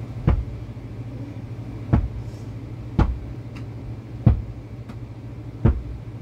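Handling noise: five short, uneven thumps over a steady low hum, from fingers tapping and the filming phone being moved against the tablet.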